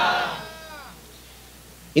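A man's chanting voice trailing off at the end of a phrase, its pitch falling as it fades into reverberation, followed by about a second of quiet with a faint low hum.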